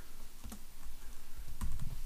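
A few keystrokes on a computer keyboard, irregularly spaced, as a short command is typed.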